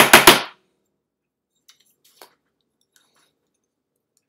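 A rapid run of loud, sharp taps, about seven a second, that stops about half a second in; after it only a couple of faint ticks are heard.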